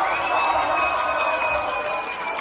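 Concert crowd cheering and whooping as the band's song ends. A single high steady tone is held over the cheering.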